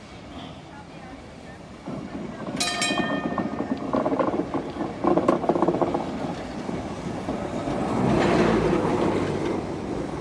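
A 1936 Düwag tramcar passing close on its rails, its wheels clattering over the track with steady motor and gear tones. There is a brief high ringing about two and a half seconds in, and the sound swells to its loudest near the end as the car goes by.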